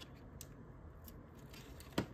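Stack of glossy trading cards being flipped through by hand: faint scattered clicks of card edges slipping past each other, with one sharper snap near the end.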